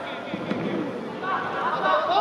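Players shouting and calling to each other on a soccer pitch, with a single sharp kick of the ball near the start.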